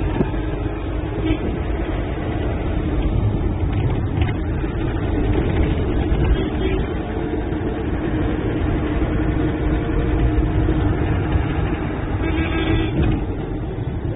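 Inside a moving minibus: steady engine and road rumble from the cabin as it drives along.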